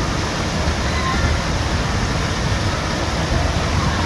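Steady rushing of water pouring from a water play structure's spouts and fountains into a shallow pool, with faint voices in the background.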